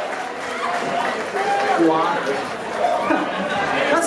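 Indistinct voices and crowd chatter echoing in a concert hall between songs, with no music playing.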